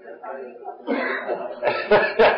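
A person coughing and clearing their throat, with the loudest, sharpest coughs near the end, over indistinct voices.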